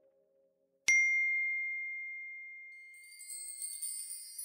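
A single bright 'ding' chime, the notification-bell sound effect, struck about a second in and ringing out as it slowly fades. Near the end a high, shimmering chime swell builds up.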